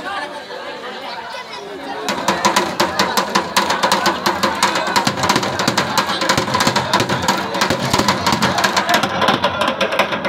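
Crowd chatter, joined about two seconds in by loud, rapid, sharp drumbeats that keep up a steady fast rhythm.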